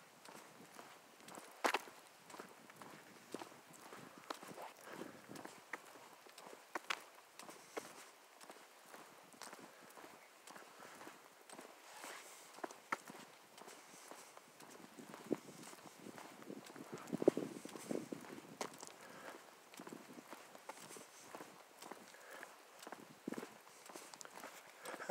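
Faint footsteps on a paved asphalt trail: scattered soft clicks and scuffs at an uneven pace, with a few louder knocks about two-thirds of the way through.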